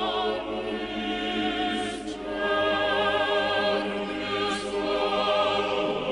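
Choral music: a choir singing slow, sustained chords with vibrato, with brief breaks between phrases about two and four and a half seconds in.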